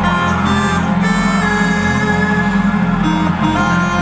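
A live band playing music with electric guitars, drums and keyboard, loud and steady with held notes.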